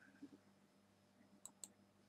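Near silence with a faint low hum, broken about a second and a half in by two quick clicks of a computer mouse button.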